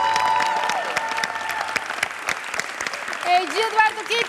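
Studio audience applause, with the last held notes of an electric violin piece dying away in the first second or two. A voice starts speaking over the clapping near the end.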